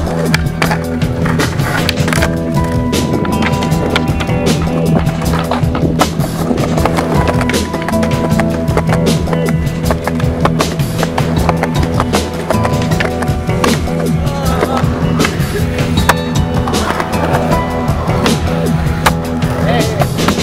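Music with a steady bass and beat over skateboarding sounds: urethane wheels rolling on concrete and repeated sharp clacks of the board popping and landing tricks.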